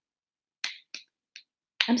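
Small plastic cream jar being twisted open: three short, sharp clicks a little under half a second apart, the first the loudest.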